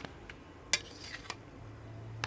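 Metal kitchen utensils clinking against steel pots and pans at a stove: a few sharp separate clinks, the loudest about three-quarters of a second in. A low hum comes in near the end.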